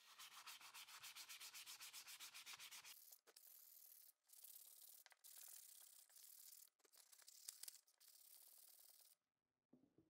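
Sandpaper rubbed by hand over a small wooden block: quick, even strokes for about three seconds, about six a second, then longer passes with short breaks, stopping near the end.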